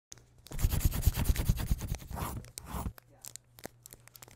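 Scratchy paper sound effect: a quick run of dense scratching and crinkling strokes, then sparser, quieter scratches that die away near the end.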